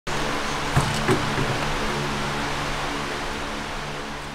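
Large metal high-velocity floor fan running: a steady rush of air over a low motor hum, with a couple of light knocks about a second in.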